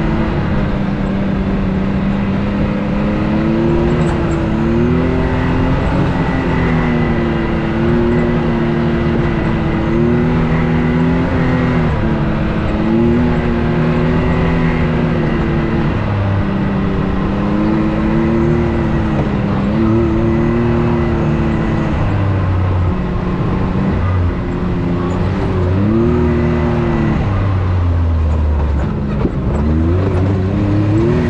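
UTV engine running under load on a trail, its pitch rising and falling every couple of seconds as the throttle is worked, dipping lower near the end before climbing again.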